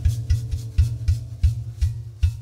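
Live band groove carried by drums and hand percussion: a dry scraping, shaking stroke about three times a second over low bass-drum thumps, with a few held instrument notes underneath.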